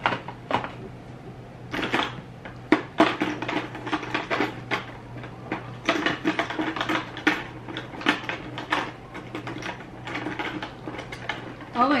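Irregular rustling and brushing of hair and a knit sweater as hands gather the hair into a ponytail, over a steady low hum.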